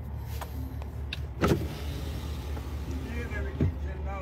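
Low, steady running noise of a car heard inside its cabin, with a few light clicks and one sharper knock about one and a half seconds in.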